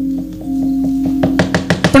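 Soft gamelan accompaniment holding one steady note, then a quick run of sharp knocks in the last second, typical of the dalang's cempala knocking on the wooden puppet chest between lines of dialogue.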